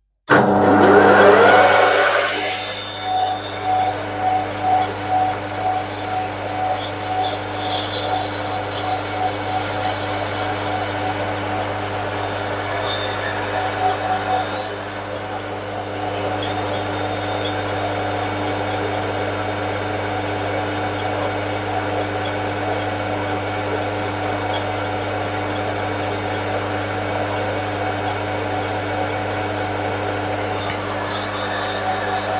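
A metal lathe starts up, its motor hum rising in pitch over the first two seconds and then running steadily. A small hand file rasps against the spinning brass workpiece, first as a hissing stretch and later as quick repeated strokes, with a single sharp click about halfway through.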